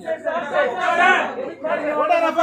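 Several people talking at once, indistinct chatter of a crowd with no clear words.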